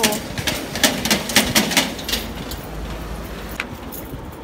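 A rapid, irregular run of sharp clicks or taps, about four or five a second, through the first two seconds, fading into a low rumble with one more click near the end.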